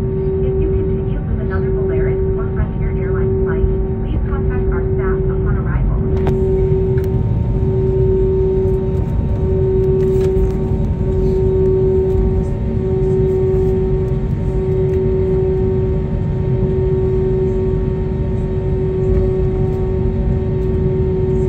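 Cabin noise of an Airbus A321neo taxiing after landing: a steady low rumble of the idling engines, with a hum that swells and fades about once a second.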